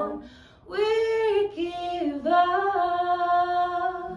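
Unaccompanied female solo voice singing a sustained, pitch-bending line, entering about a second in after the group's chord fades out.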